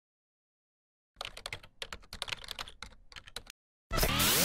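A run of rapid, uneven clicks, starting about a second in and stopping after about two and a half seconds. Loud music cuts in at the very end.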